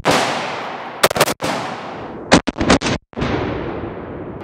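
AR-style rifle shots with long rolling echoes: one shot at the start, a pair about a second in, then a fast string of about four shots. A last report with a long fading tail follows as the target sends up a cloud of smoke.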